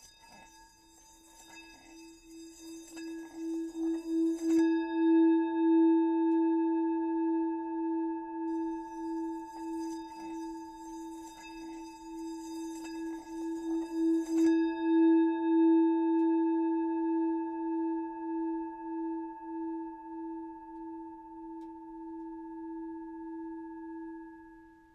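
Sustained ringing of a bell-like instrument, swelling and wavering in loudness, with a rasping rubbing sound in two stretches, about the first four and a half seconds and again from about eight to fourteen seconds in, while the tone rings on between and after them.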